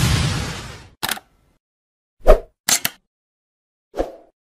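Sound effects for an animated intro. A whoosh fades out in the first second, followed by short clicks and pops with silence between them. The loudest is a pop with a low thump a little over two seconds in, then a quick double click, and another pop near the end.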